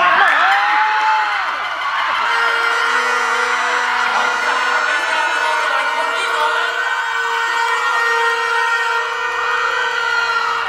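Audience cheering and screaming loudly in reaction to a pageant contestant's answer, with a whooping scream near the start and a long steady tone held over the crowd noise.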